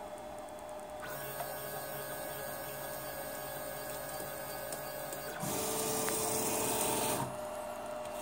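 Motors of a 3D printer converted to a pick-and-place machine running steadily as the head moves away from the placed chip, starting about a second in. A louder, hissier stretch follows from about five and a half seconds in and lasts under two seconds.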